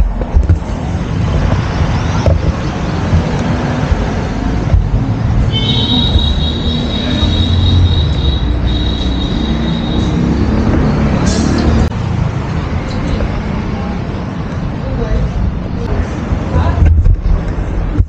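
Steady low rumbling background noise with irregular swells, and a high whistle-like tone lasting a few seconds around the middle.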